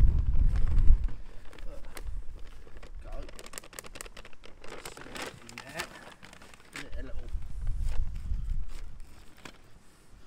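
Wind buffeting the microphone in two gusts, one in the first second and another from about seven to eight and a half seconds in, over the rustle and clicks of plastic cement bags being handled.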